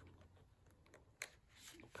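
Near silence, with one faint tap about a second in and a soft rustle near the end as cardstock pieces are handled and dry-fitted together.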